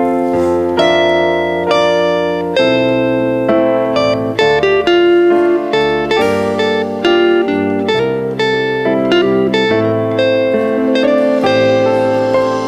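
Live band playing an instrumental song introduction: plucked and keyboard chords, each struck sharply and held, changing about once a second.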